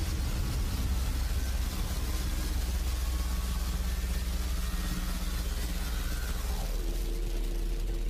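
A loud, sustained wash of noise over a deep rumble, with a few faint steady tones, one of which slides down in pitch near the end. It is a sound-effect blast.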